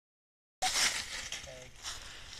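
Dry fallen leaves rustling as a dog runs off through them. The rustle starts sharply about half a second in and fades, with a brief faint voice-like sound near the end.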